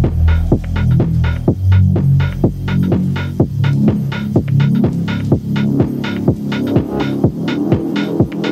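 House track with a steady four-on-the-floor kick drum, about two beats a second, under a deep, throbbing synth bassline. About three seconds in, the lowest bass drops away, leaving the kick and mid-range synths.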